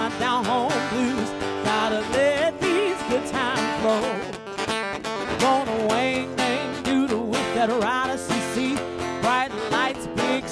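Live blues: a woman's voice singing over guitar, with bending, wavering notes and steady percussion strikes.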